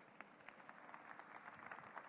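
Near silence with faint, scattered clapping from an audience.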